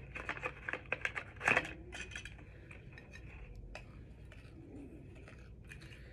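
A stirring utensil mixing baking soda and shampoo in a glass bowl, with quick scrapes and clinks against the glass. They come thick in the first two seconds, with one louder clink about a second and a half in, then turn sparse as the mixing slows.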